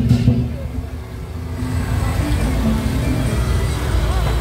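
Temple-festival music: the drum and cymbal beat breaks off shortly after the start. What remains is a low droning with a few held notes.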